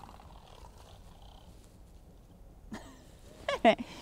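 A woman laughing in short bursts, starting about three seconds in and growing louder toward the end, over a faint quiet background.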